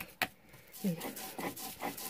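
Stone mano (metlapil) scraping back and forth over a stone metate, grinding wet nixtamal into masa on the fourth pass that makes it finer. Short rasping strokes come one after another from about a second in.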